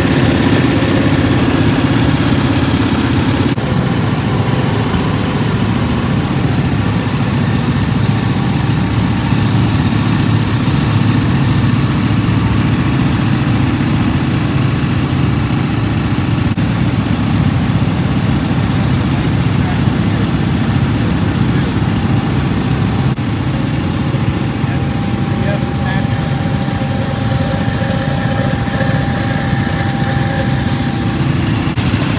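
Gravely garden tractor engine running steadily and loud, close by.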